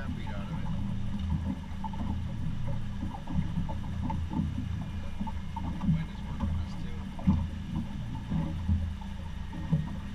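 Small boat's motor running steadily at low speed, with irregular short slaps of water against the hull every second or two.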